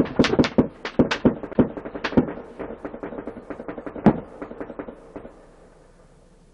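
A rapid volley of gunshots from several guns, picked up by a patrol car's dashcam microphone. The shots come thick and fast at first, with one last loud shot about four seconds in, then thin out and stop a little after five seconds.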